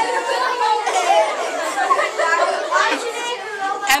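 Many voices chattering and talking over one another at once, a steady hubbub of listeners in a large room.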